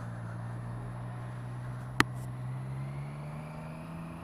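Motorcycle engine running at a steady cruise, its pitch rising slowly over the last second or so, with one sharp click about two seconds in.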